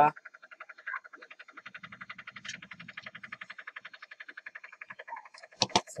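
A steady, rapid pulsing call in the background, about a dozen even pulses a second, like a frog croaking. There are a couple of sharp clicks near the end.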